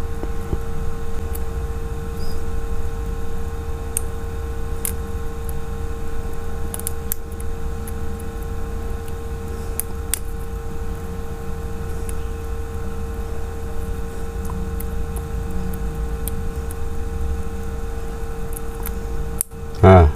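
Steady background hum with a held mid tone, with a few faint light clicks of steel tweezers working the metal cover off a small SIM-card connector.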